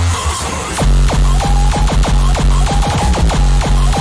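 Hard electronic dance music in a rawcore remix style. A fast, distorted kick-drum beat with heavy bass comes in fully under a second in, and a high synth line plays above it.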